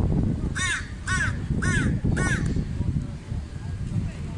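A crow cawing four times in quick succession, the calls about half a second apart.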